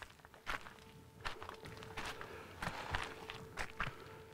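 Footsteps on stony, gravelly ground: a few irregular crunching steps.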